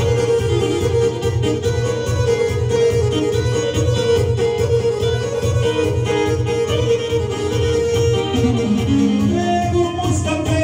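Live kolo dance music played on electronic keyboards: a steady, regular beat under a sustained melody line, with the melody stepping to new notes near the end.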